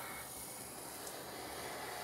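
Faint steady hiss of room tone and recording noise, with no distinct sound standing out.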